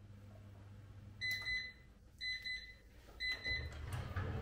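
Electronic beeping of a kitchen oven timer: three pairs of short high beeps, about one pair a second.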